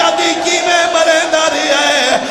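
Male voice chanting a noha, a mournful Shia lament, in long wavering held notes.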